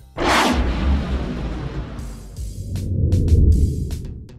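Cinematic whoosh-and-rumble sound effect: a sudden loud whoosh that fades, over a deep rumble that swells again about three seconds in and drops away near the end.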